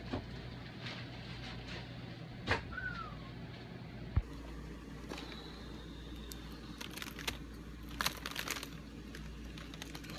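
Faint handling of plastic bags: scattered clicks, a thump and crinkling, densest near the end, over a low steady hum.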